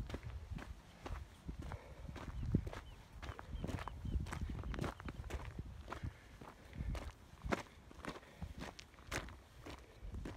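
A hiker's footsteps crunching on a dirt trail of loose gravel and rocks, a steady run of short scuffing steps.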